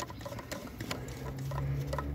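Irregular small plastic clicks and rattles from a hand handling the brake light switch's wiring plug behind the brake master cylinder. A low hum comes in about halfway through.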